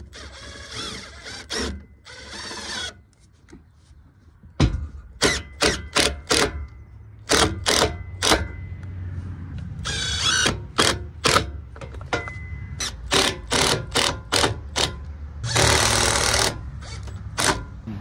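Makita cordless drill run in several bursts, its pitch wavering, driving the bolts that hold a new carpeted bunk board to a boat trailer's bracket. Between the runs come many sharp clicks and knocks.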